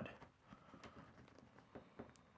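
Faint crackling of a small knife cutting through a bagel's crust, heard as a few soft scattered ticks.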